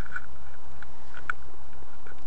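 Steady low wind rumble on the microphone, with a few faint short clicks over it.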